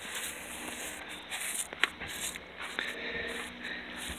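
Quiet outdoor background with soft rustling and a couple of light clicks near the middle, from someone walking across grass between garden beds while handling a phone camera.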